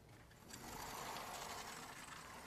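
Faint scratching of a board being drawn on, starting about half a second in, as a new graph is sketched.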